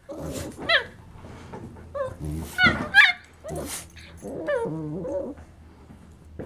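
A senior Shiba Inu and a puppy play-fighting: a string of short, high yips and barks mixed with growls. Later the sounds turn into lower, wavering growl-whines lasting about a second and a half. This is rough play over a toy, not aggression.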